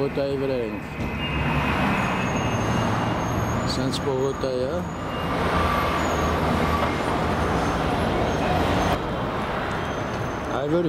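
Steady city street traffic noise from passing cars, swelling around two seconds in and again from about five seconds. A voice briefly sings "la la" at the start and again about four seconds in.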